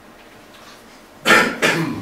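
A person coughing twice in quick succession, a little past the middle, in a small room.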